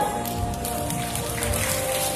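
Background music with held notes, together with audience applause.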